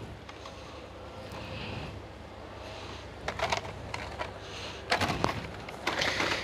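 Steady background hum of a shop, with a few short crackles of plastic blister packs being handled, about three seconds in and again near the end.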